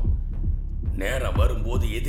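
Low, repeating pulse in a dramatic film soundtrack, with a man's voice coming in about a second in.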